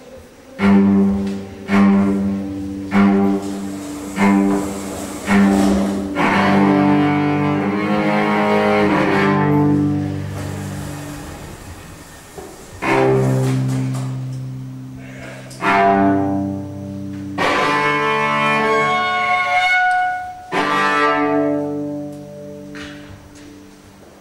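Solo cello played with the bow in a free improvisation: five short, accented strokes on the same low note in the first five seconds, then long held notes that die away. A new series of strong bowed notes follows and fades out near the end.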